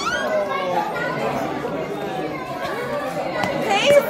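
Several voices chattering over one another in a room, with a child's short high-pitched rising cry near the end.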